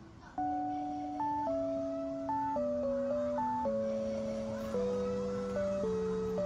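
Background music: a simple melody of held notes over a slowly descending bass line, starting about half a second in.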